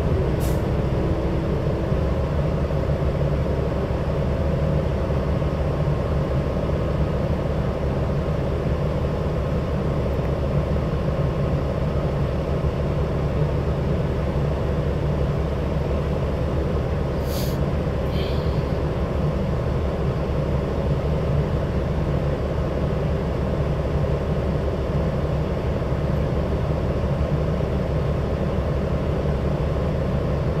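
Cabin drone of a New Flyer Xcelsior XD60 articulated diesel bus, heard from inside the passenger compartment: a steady, even low rumble. A brief sharp high-pitched sound cuts through just after the start and again a little past halfway.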